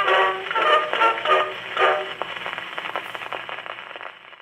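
Edison Gold Moulded wax cylinder playing through a late Model A Edison Home phonograph's horn: the closing notes of the instrumental accompaniment, narrow in range as an acoustic recording is. After about two seconds the notes die away, leaving the cylinder's surface crackle and hiss fading out.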